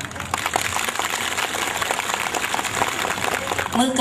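Audience applause: many hands clapping in a dense, steady patter that gives way to a woman's voice resuming near the end.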